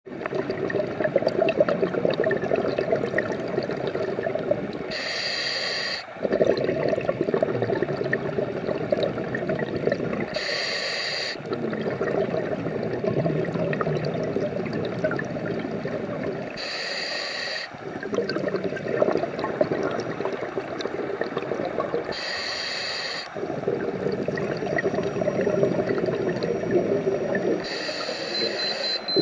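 Scuba diver breathing through a regulator underwater: a short hissing inhale about every six seconds, five in all, each followed by several seconds of bubbling exhale.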